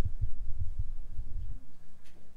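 Electric bass guitar playing a run of low notes, heard as soft rhythmic thumps, about four or five a second, that stop about a second and a half in.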